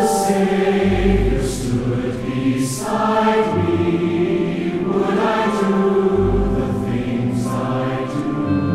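Large mixed choir singing a slow hymn with pipe organ accompaniment, deep low organ notes sounding under the voices a few times.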